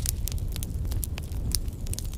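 Fire sound effect: a low rumble with many scattered sharp crackles.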